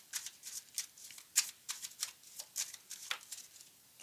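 Tarot deck being shuffled by hand: a string of quick, irregular card flicks and snaps, the sharpest about a second and a half in.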